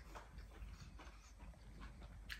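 Faint eating sounds, close to near silence: soft chewing and mouth noises, with fingers working rice on a steel plate.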